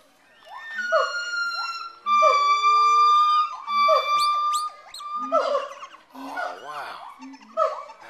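Gibbons calling: a string of short falling whoops, a long steady whistled note held for more than a second, then quick rising swoops and a warbling stretch.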